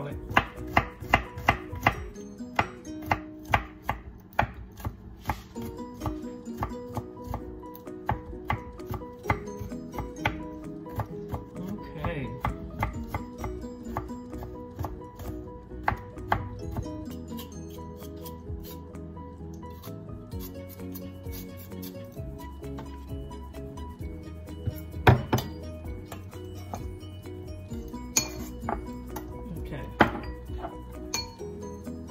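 Kitchen knife chopping fresh garlic cloves on a wooden cutting board: a run of sharp knife strikes, loud and evenly spaced at first, then quicker and lighter as the garlic is minced. The strikes thin out in the second half, with one louder knock late on.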